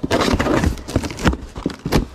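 A knife slicing through packing tape on a cardboard box, followed by a run of sharp knocks and rustles as the cardboard flaps and the packing paper inside are handled.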